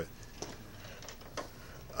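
Quiet room tone: a faint steady hiss with two faint clicks, about half a second in and again near the middle.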